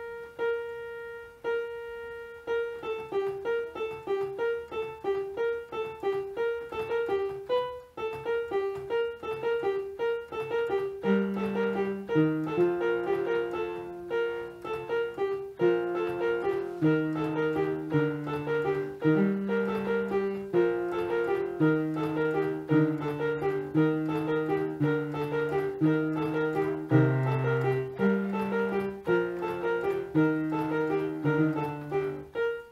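Electronic home keyboard played with a piano sound: a right-hand melody of repeated and stepping notes, with a left-hand bass line joining about eleven seconds in.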